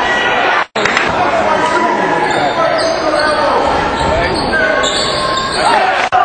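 Basketball game sound in a gym: a ball bouncing on the court amid voices of players and crowd, echoing in the hall. The sound drops out for an instant just under a second in.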